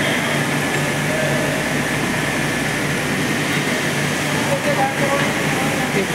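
Steady, loud din of a TMT bar rolling mill's machinery: a continuous low hum with a thin high whine over broad mechanical noise.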